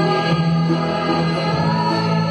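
A mixed choir of women's and men's voices singing a Marathi Christian song together, with acoustic guitar accompaniment.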